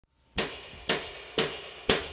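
Percussive count-in: four sharp clicks, evenly spaced about two a second, each with a short ring, counting the band into the song.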